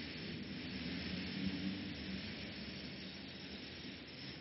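Steady background hiss of an old lecture recording, with a faint low hum.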